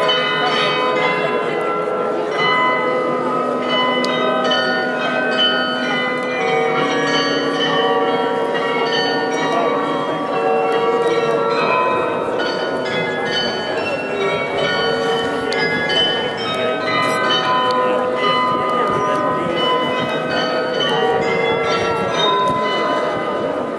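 The Glockenspiel of Munich's New Town Hall, its tuned bells playing a melody. The notes ring on and overlap one another.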